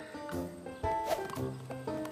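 Gentle background music from the cartoon's score, with held notes changing about every half second.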